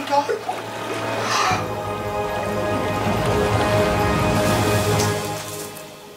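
Background music of long held tones, with a rush of water building about a second and a half in and cutting off shortly before the end: water splashing over a person's face.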